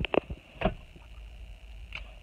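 A few short clicks and knocks, like a handheld phone camera being handled, over a low steady rumble inside a car's cabin.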